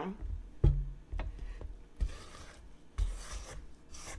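Spatula scraping down the sides of a stainless steel stand-mixer bowl of creamed butter and sugar, with soft rubbing strokes and a few sharp knocks against the bowl.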